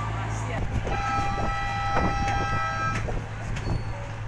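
A boat horn sounds one steady tone for about two seconds, starting about a second in, over the steady low drone of idling boat engines.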